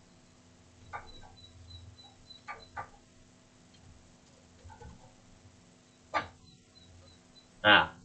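A few faint, scattered computer-keyboard keystrokes over a low steady hum, with a brief burst of the presenter's voice near the end.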